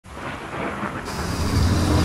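Intro sound effect of thunder rumbling with rain, swelling up from silence, with a faint high steady tone coming in about a second in.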